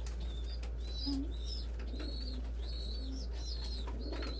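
A young squeaker pigeon giving a string of thin, high peeps, with a few short, low coos from adult pigeons mixed in.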